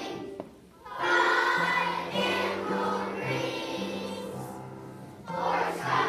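Children's choir singing with upright piano accompaniment. A short break between phrases about half a second in, then the choir comes back in on held notes.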